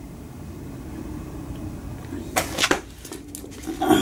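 Cardboard laserdisc jackets being handled: a few short rustles and taps starting about two and a half seconds in, over a low, steady room noise.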